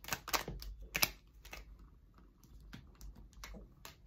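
A tarot deck shuffled by hand: a quick run of sharp card clicks in the first second and a half, then a few softer, scattered taps as a card is drawn and laid down.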